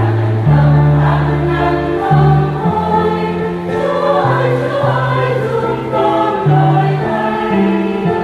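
A Vietnamese Catholic church choir singing a hymn over an accompaniment of held bass notes that change every second or so.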